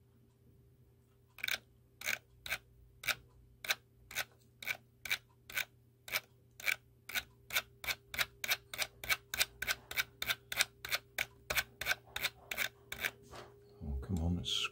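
A computer mouse clicking over and over while a long file list is paged down. The clicks come about two a second from about a second and a half in, then speed up to about three a second, over a faint steady hum.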